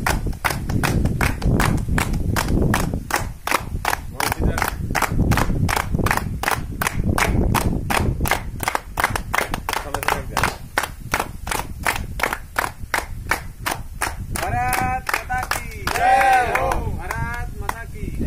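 A group of people clapping hands in unison in a steady rhythm, about three claps a second, with voices under it. Near the end, bleating calls come in several times over the clapping.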